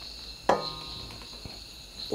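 A single light knock against a stainless steel mixer bowl about half a second in, ringing briefly with a metallic tone, as egg whites are poured in. A faint, steady high-pitched tone runs underneath.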